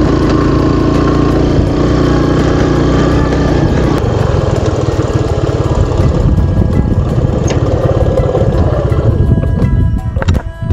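A motorcycle engine running steadily as the bike rides along, with music playing over it.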